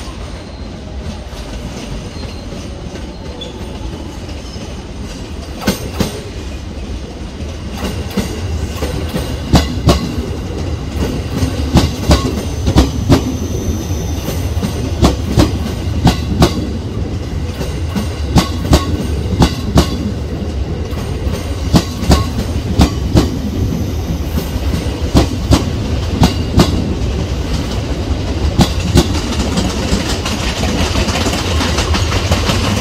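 JR West 281 series electric limited-express train coming into the station and passing close. A low rumble runs under it, and from about a quarter of the way in the wheels clack over rail joints and points in a long run of sharp clicks.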